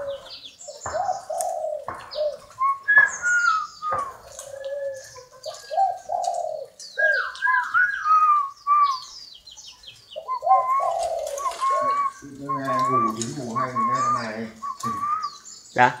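Spotted doves cooing in their cages, a low soft coo repeated in short phrases several times, with short high chirps of small birds mixed in. Near the end a low voice-like murmur joins in.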